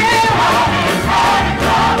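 Gospel choir singing behind a female lead vocalist on microphone, who holds long notes with a wavering vibrato, over steady low accompaniment.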